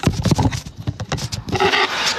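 A phone being handled and moved close to its own microphone: a quick, irregular run of knocks and clicks with rubbing between them.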